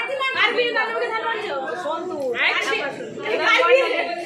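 Several women talking over one another in overlapping chatter, with one voice rising higher about halfway through.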